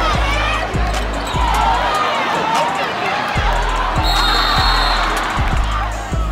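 A basketball bouncing on a hardwood gym floor, a thud every second or so, over bass-heavy hip-hop music and crowd voices. About four seconds in, a referee's whistle sounds for about a second.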